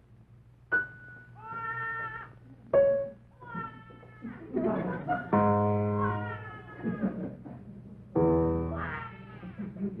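Comic baby-crying wails, high and meow-like, several rising and falling cries in a row. Loud sustained piano chords are struck about halfway through and again near the end.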